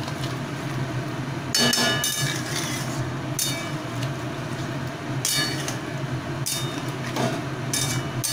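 Metal spatula scraping and clinking against a wok as a thick egg curry is stirred. There are about half a dozen sharp, ringing clinks over a steady low hum.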